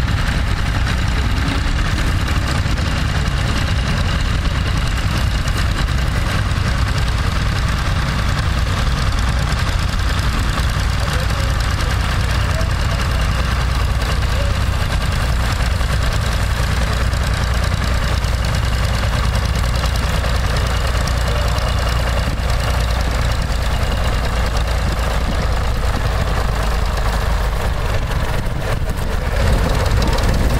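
Vintage tractor engine running steadily under load while pulling a plough through stubble.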